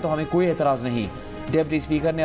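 Speech over a steady background music bed; the voice dips briefly about halfway through.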